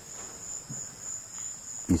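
Insects making a continuous, high-pitched trill that holds steady in pitch and level.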